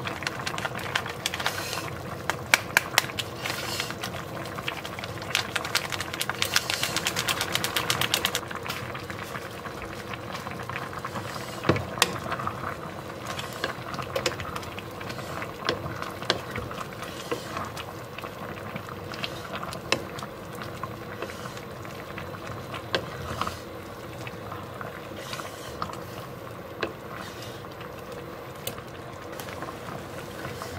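A pot of diced vegetables simmering with a steady bubbling, with scattered clicks and knocks from a spatula stirring against the pot. There is a fast run of fine crackling from about five to eight seconds in.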